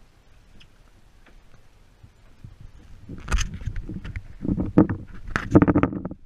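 Thumps and knocks on a fiberglass fishing boat, a burst of them starting about halfway through and loudest near the end, some with a short hollow ring.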